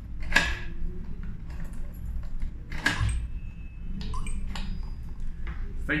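Key turning in the Geeksmart L-F505 smart lock's cylinder to lock and unlock it: two sharp mechanical clicks about two and a half seconds apart, then a few lighter ticks near the end, over a steady low room hum.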